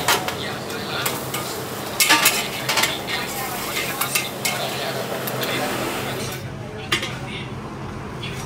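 Noodles sizzling in a hot wok while a metal ladle stirs and scrapes them, with sharp clanks of metal on metal near the start and about two seconds in. The sizzle thins out about six seconds in.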